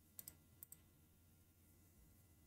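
A few faint computer mouse clicks in the first second, against near silence.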